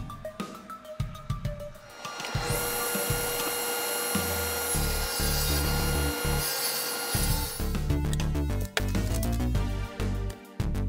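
A table saw running and cutting through plywood for about five seconds, starting a few seconds in: a steady whine over the noise of the cut. Background music plays under it.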